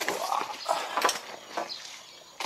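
Footsteps of a person walking, with scuffs and knocks roughly every half second, mixed with handling noise from a handheld camera.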